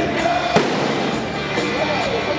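Live rock band playing loudly through a big outdoor PA, heard from within the crowd. A single sharp bang stands out about half a second in.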